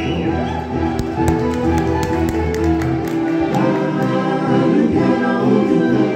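A live rock band playing, with singing over electric guitars and drums.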